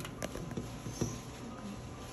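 A few faint, sharp clicks and light taps over quiet room noise, the loudest about a second in.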